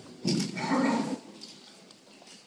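A horse neighs once, a loud call of about a second that opens with a sharp burst.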